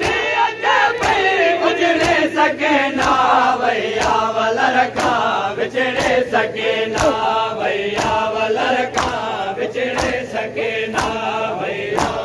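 A group of men chanting a Sindhi noha (a Muharram mourning lament) together, over steady rhythmic chest-beating slaps (matam) about twice a second.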